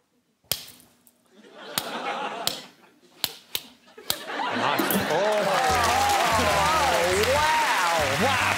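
A few sharp clacks and a slap as kitchen tongs and a hand go at a marshmallow on a small table. About four seconds in, a studio audience breaks into loud laughter and whoops that carry on to the end.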